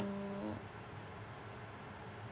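A woman's voice holding a drawn-out hesitation sound, an "anoo…" filler on one steady pitch, for about half a second while she searches for a word. After it there is only a faint low room hum.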